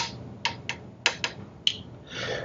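A person chewing close to the microphone: about six short, sharp wet mouth clicks and lip smacks spread over two seconds.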